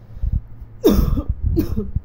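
A woman coughs twice, the first cough the louder, after a couple of dull low thumps.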